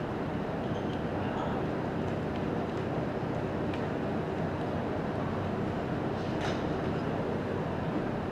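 Steady background noise of the hall, an even rumble with no one speaking, with a few faint clicks scattered through it and a sharper tick about six and a half seconds in.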